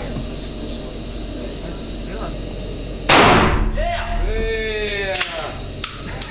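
A single pump-action shotgun shot about three seconds in, sharp and loud with a short echo off the walls of an indoor range, followed by a man's drawn-out vocal cry.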